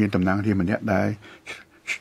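Speech only: a man talking, with a short break a little over a second in.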